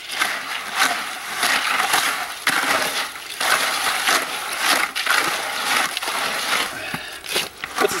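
Wet concrete mix being stirred and scraped by hand in a plastic five-gallon bucket: a continuous gritty scraping and crunching of sand and gravel against the bucket.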